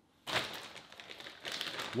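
Crinkling and rustling with many small clicks and taps, starting suddenly a moment in: handling noise such as packaging being worked.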